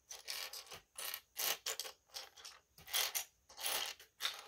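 Loose plastic LEGO pieces clattering as a hand sifts through them on a wooden tabletop: an irregular run of short clicks and rattles, several a second.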